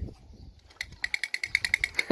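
A wind-up drumming toy doll beating its drum, a fast, even tapping of about ten strikes a second.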